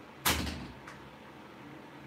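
A single short thump on the phone's microphone about a quarter second in, typical of the phone being handled, followed by faint background hiss.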